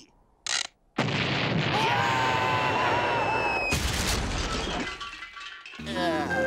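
Cartoon dynamite explosion sound effect: a sudden loud blast about a second in that rumbles on for several seconds, with a second burst near four seconds, then dies away.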